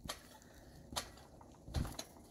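Quiet, with two faint clicks, then a soft low thump near the end as a child lands on a trampoline mat after a flip.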